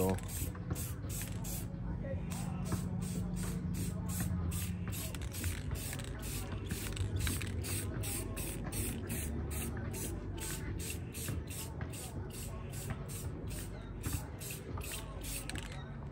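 Aerosol can of matte clear coat spraying: a hiss that pulses about three times a second and stops near the end.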